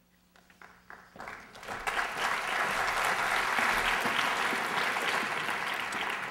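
Audience applauding: a few scattered claps that build into full, steady applause about a second in.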